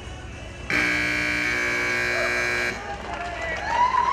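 Arena buzzer sounding one loud, steady tone for about two seconds, starting abruptly about a second in and cutting off sharply: the time-up signal ending a cutting horse's run. A man's voice over the arena loudspeaker begins near the end.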